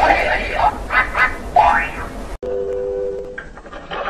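Pitch-shifted cartoon production-logo soundtrack: warbling, voice-like cartoon sounds that cut off suddenly a little over two seconds in. A short steady two-note tone follows and fades away.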